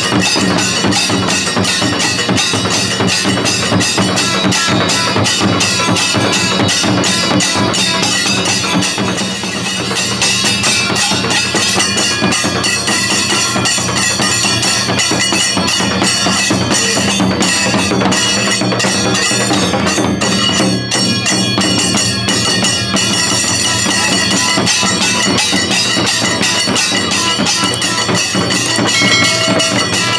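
Kailaya vathiyam temple percussion ensemble playing: brass hand cymbals clashing over continuous, fast beating of barrel drums and stick-beaten frame drums. The rhythm is dense and runs unbroken at a steady loudness.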